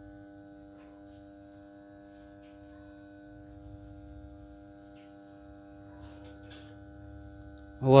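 Steady electrical mains hum made of several fixed tones, with a few faint ticks now and then.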